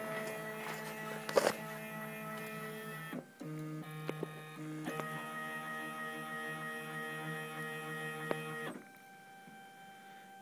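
Gravograph IM4 engraving machine's stepper-driven axes moving the table and engraving head, a steady motor whine made of several tones that shift pitch as the moves change. It breaks off briefly about three seconds in, with a few sharp clicks along the way, and stops near the end.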